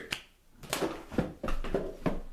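A few sharp clicks and taps, roughly every half second, with some low bumps among them: small handling and movement noises.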